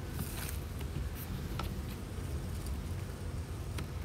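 A few faint knocks and clicks as wooden beehive boxes are gripped and shifted, over a steady low outdoor rumble.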